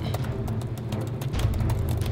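Rapid, irregular clicking of laptop keyboard typing over background film-score music with a steady low bass.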